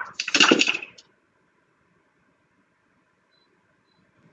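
A short voice sound over the video-call audio in the first second, then near silence.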